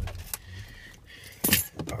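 Handling noise inside a vehicle cab: rustling and small clicks, with a sharp, loud click about one and a half seconds in.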